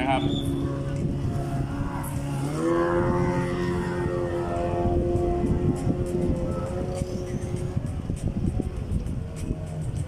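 An engine running at a steady pitch, then revving up about two and a half seconds in and holding a high, even note for several seconds before fading near the end.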